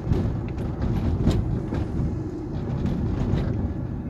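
A steady low rumble of vehicle-like background noise, with a few faint clicks.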